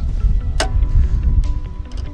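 Background music with a deep bass and one sharp click or hit just over half a second in.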